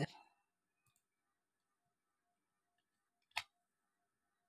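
Near silence, broken by a single short, sharp click about three and a half seconds in, typical of a computer mouse button being pressed.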